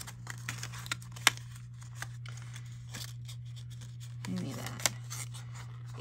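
Cardstock being scored and handled on a plastic scoring board with a bone folder: light scrapes and rustles with scattered sharp taps, the loudest about a second in, over a steady low hum.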